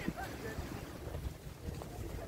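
Wind rumbling on the microphone: a low, uneven rumble with no clear other source.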